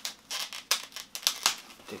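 Plastic packaging rustling and crinkling in a run of short, sharp strokes as a new camera is unwrapped by hand.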